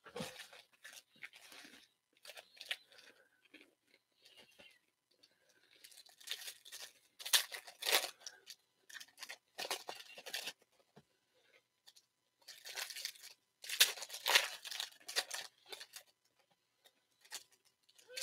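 Foil trading-card pack wrappers being torn open and crinkled by hand, in irregular bursts of tearing and rustling, with the loudest rips about seven seconds in and again around fourteen seconds.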